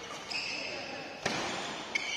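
Badminton rackets striking a shuttlecock during a rally, with sharp hits about a second and just under two seconds in. Between them there is a high squeak, as of shoe soles on the court floor.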